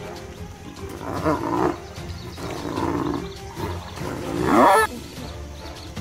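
Spotted hyenas growling as they fight, in three loud calls about a second apart, the last the loudest with its pitch rising and then falling.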